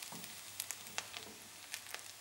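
Food sizzling in a frying pan on a kitchen stove: a quiet steady hiss broken by scattered sharp crackles.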